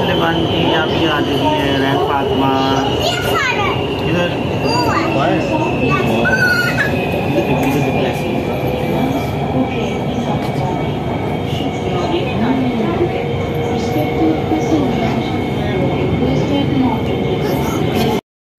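Inside a moving Lahore Orange Line metro carriage: a steady running rumble with a high electric whine that falls slowly in pitch, under children's squeals and voices.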